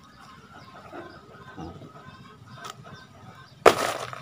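Handling noise from a folded woven polypropylene planter bag held close to the microphone: faint rustles, then one brief loud rustle near the end.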